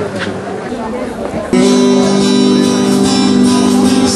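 Crowd chatter, then about a second and a half in, a loud amplified electric guitar chord is struck and held steady as the band starts to play.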